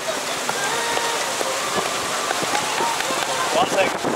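Water rushing and splashing along the hull of a moving boat, a steady crackling hiss.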